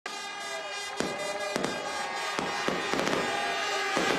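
Fireworks bursting overhead: about five sharp bangs spread over the seconds, over the steady din of a large outdoor crowd.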